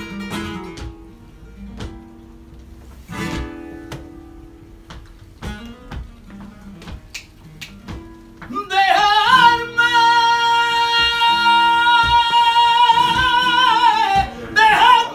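Flamenco guitar playing a soleá, with palmas (hand claps) cutting sharply over the plucked notes. About nine seconds in, a male flamenco singer comes in loudly on a long held high note that bends at its start and is sustained to the end.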